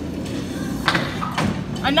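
Tenpin bowling pins being knocked down by a bowling ball: two sharp clatters, about a second in and half a second later, over a steady low rumble.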